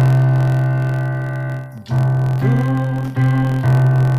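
A Yamaha arranger keyboard plays full chords over a left-hand octave bass, harmonizing the major scale. One chord rings and fades for about two seconds, then new chords are struck about every half second.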